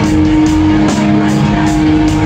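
Pop-punk band playing live at full volume: distorted electric guitars, bass and drums with a steady beat, heard from within the crowd.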